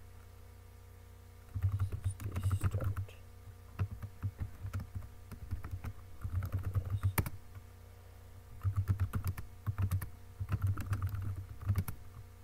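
Typing on a computer keyboard: about five short bursts of keystrokes with pauses of a second or so between them.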